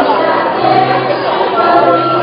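School choir of mixed student voices singing a graduation song, holding long sustained notes.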